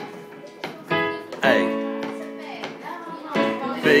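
Piano chords played on an M-Audio keyboard: an A major chord struck about a second in and held, then a B major chord near the end.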